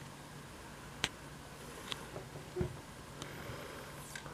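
Sony CFD-S01 boombox's CD drive reading a freshly loaded disc: a few faint clicks and ticks from the mechanism, a sharper click about a second in and a soft knock past the middle, over a low steady hum.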